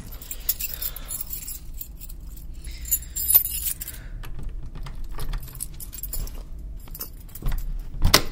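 Foley of a bunch of keys jangling, with scattered small metallic clicks and knocks; the busiest jingle comes about three seconds in.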